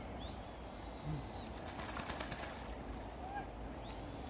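A bird's high, thin whistled call, held for about a second, followed by a quick run of small clicks, over a steady low background rumble.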